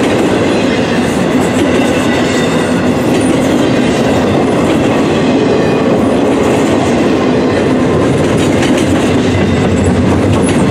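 Empty intermodal flatcars and well cars of a freight train rolling past at speed: a steady rumble with the clatter of wheels over the rails.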